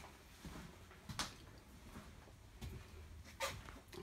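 Faint room tone with two short knocks, one about a second in and one near the end.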